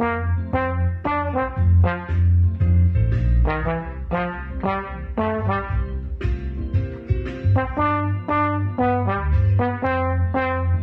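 Slide trombone playing a lively rock-style shuffle melody in short detached notes, several a second, with a steady low bass line underneath.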